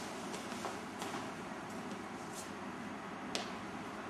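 Steady hiss and room noise in a hard-floored hall, broken by a few light, sharp clicks; the sharpest comes near the end.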